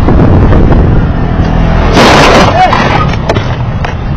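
Wind and road noise rushing over the dashcam microphone, then about two seconds in a sudden loud crash of a traffic collision lasting about half a second, followed by a couple of small knocks.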